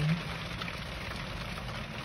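Steady rain on a car's windshield and roof, heard from inside the cabin over a low, even rumble.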